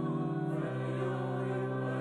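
Choir music: voices singing long held chords, moving to a new chord about two-thirds of the way through.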